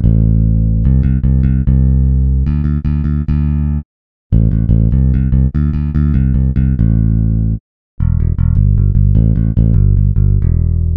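Sampled electric bass from the Ample Bass P Lite II virtual instrument, a Precision Bass emulation, playing fast runs of repeated notes in three phrases with short breaks about 4 and 7.5 seconds in. The pitch steps between notes, and the single-note-repeat articulation makes the repeats sound more natural.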